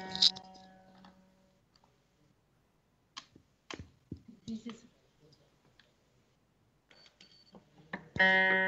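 A veena string plucked once at the start, its note ringing and dying away over about a second and a half, followed by a few scattered clicks and taps from the instrument before the playing proper begins.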